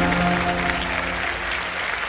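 Studio audience applauding, with a held musical chord underneath that fades out about a second in.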